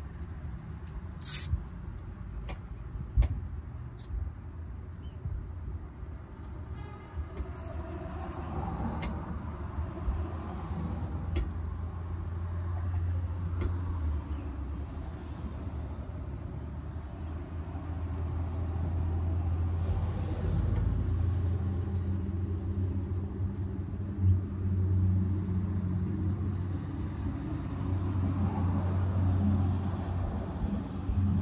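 Low rumble of road traffic, with a heavy vehicle's engine running close by that grows louder over the second half. A couple of sharp clicks sound in the first few seconds.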